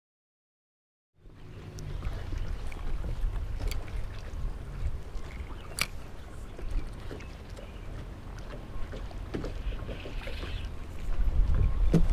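Outdoor open-water ambience from a fishing boat: low rumbling wind on the microphone and water lapping at the hull, with a few sharp clicks from the rod and reel being handled. It cuts in suddenly after about a second of silence.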